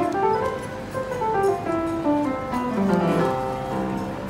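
Upright piano being played: a flowing melody of ringing notes that steps up and down over lower notes.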